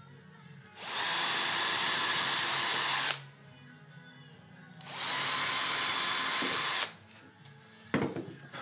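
Bosch power drill boring into plywood in two runs of about two seconds each, its motor whining at a steady pitch.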